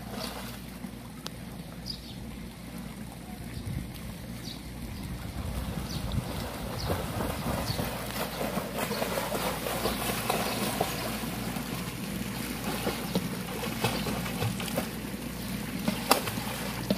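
A swimmer's freestyle arm strokes and kicks splashing in a swimming pool, getting louder as the swimmer comes closer, from about halfway through.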